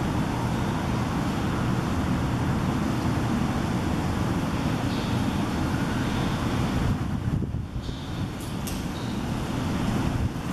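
Steady low rumbling background noise with no distinct events. It dips briefly about seven and a half seconds in.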